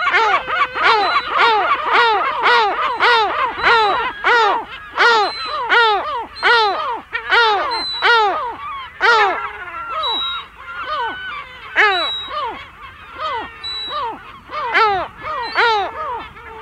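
Adult lesser black-backed gull giving a rapid, continuous series of harsh 'kow' alarm calls, about one and a half a second. These are the alarm of an adult with chicks.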